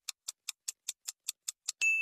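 Clock-ticking countdown sound effect: even, fast ticks about five a second, ending near the end in a single bright ding that rings on.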